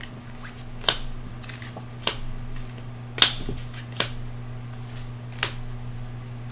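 Tarot cards snapping sharply as they are picked out of a fanned spread on a cloth-covered table: five separate snaps at uneven intervals, over a steady low hum.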